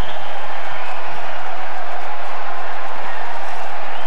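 Ice hockey arena crowd cheering and applauding steadily in reaction to a goal.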